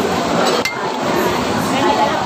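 A single sharp clink of tableware a little over half a second in, with a brief ring after it, over steady restaurant chatter.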